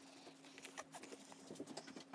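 Faint pencil scratching on paper: a scatter of short strokes and light taps, over a faint steady low hum.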